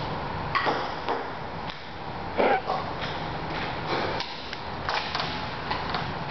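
Table tennis rally: a ping-pong ball clicking sharply off the paddles and table at an uneven, quick pace, about a dozen strikes, with one louder, longer knock about halfway through.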